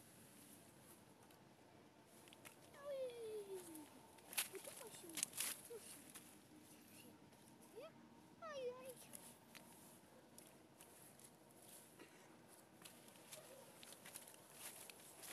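Mostly quiet, with two faint drawn-out vocal calls: the first, about three seconds in, falls in pitch; the second comes about eight and a half seconds in. A few sharp clicks fall between them, about four to five and a half seconds in.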